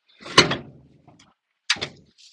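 Two sharp metallic clunks about a second and a half apart from the PTO control in a 1946 Dodge W-series pickup's cab being pushed in and pulled out by hand.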